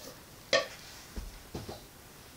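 Cookware being handled and set aside: a short sharp clack about half a second in, then a soft low thump and a couple of light knocks.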